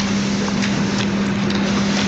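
Steady hiss with a constant low hum underneath, as loud as the surrounding speech.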